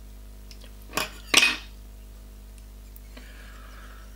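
Small metal fly-tying scissors: two sharp metallic clicks in quick succession about a second in, the second louder and ringing briefly.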